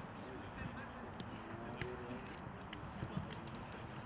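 Football training-ground ambience: a group of footballers chatting and calling to each other at a distance, with a handful of short sharp taps scattered through.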